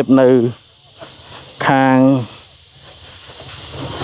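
A man talking in short spoken phrases, one syllable drawn out about two seconds in, over a steady background hiss that grows louder near the end.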